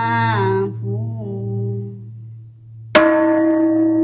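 A voice chanting over a steady low drone, fading out about two seconds in; about three seconds in, a bell is struck sharply and rings on with a steady tone.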